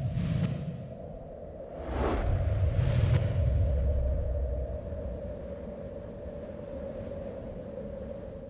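Sound design for an animated logo sting: a swoosh at the start, then two sharper whooshes about two and three seconds in over a swelling low rumble, all laid on a steady held tone that slowly fades.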